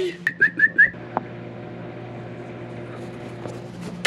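Four quick, high whistle-like chirps within the first second, followed by a single click and a faint steady hum.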